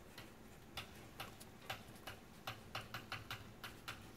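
Dry-erase marker writing on a whiteboard: a faint, irregular run of light taps and scrapes as the tip strikes and drags across the board.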